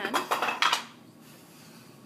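A brief rattling clatter of small hard parts of the plastic vascular model, knocked as the pointer bumps it, lasting under a second and then stopping.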